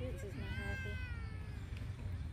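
A child's high-pitched shout from across the pitch, one drawn-out call that rises and then falls, over a steady low rumble.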